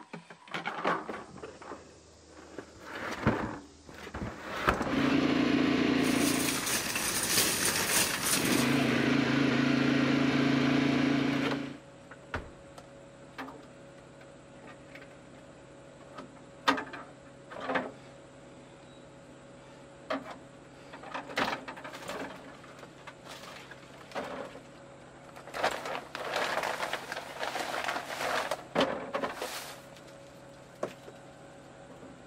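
A loud, steady low hum runs for about seven seconds, starting about five seconds in, and cuts off suddenly. After it come scattered knocks and clicks and a stretch of plastic-bag rustling as food containers are handled and packed into the wire basket of a portable compressor fridge-freezer.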